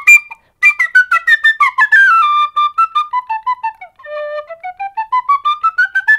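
Tin whistle (penny whistle) in D played as a scale in short, separately tongued notes: down through its two-octave range to the low D, held briefly, then back up toward the top.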